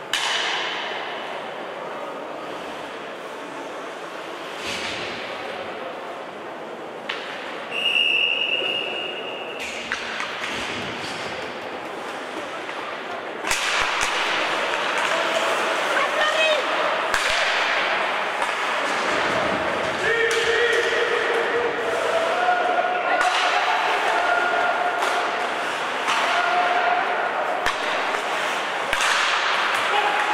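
Ice hockey rink sounds: a referee's whistle blows once, for about a second and a half, about eight seconds in. From about thirteen seconds on it gets louder, with skates scraping the ice and sticks and puck clacking and knocking in quick succession, and voices calling out in the later part.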